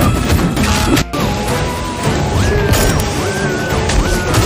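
Action-trailer score with crashing impact hits in the first second, then a high melody line stepping up and down over a dense, loud music bed.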